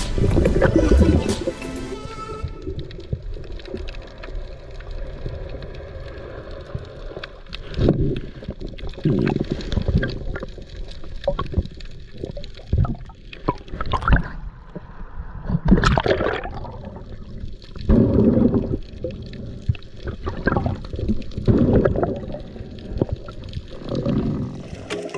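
Underwater sound picked up by a diver's camera housing: irregular, muffled surges and gurgles of moving water, a few louder ones along the way. Background music fades out in the first two seconds.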